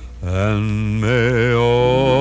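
Slow music with a sung melody: long held notes with a wide vibrato over sustained low accompaniment. A new phrase comes in about a fifth of a second in, after a brief dip.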